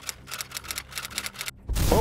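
Sound effect of a rapid, irregular series of sharp cracks over a low rumble, with a short rush of noise near the end.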